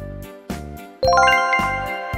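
Background music with a steady beat of about two beats a second; about halfway through, a quick rising run of bell-like chimes sounds and rings on.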